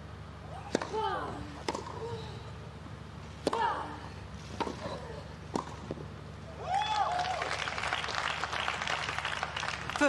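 Tennis rally on a grass court: five sharp racket strikes on the ball about a second apart, two of them followed by a player's grunt. The crowd then applauds from about seven seconds in, starting with a short shout.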